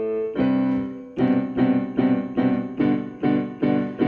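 Instrumental break in a song: a keyboard holds a chord, then from about a second in plays short repeated chords in an even rhythm.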